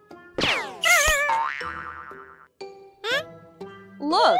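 Cartoon sound effects over children's music: a falling swoop about half a second in, a wobbling boing right after it, and a short rising swoop near the end.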